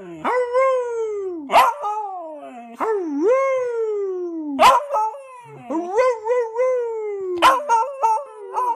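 Beagle puppy howling: a run of about five drawn-out howls, each falling slowly in pitch over a second or so, several of them opening with a short sharp bark.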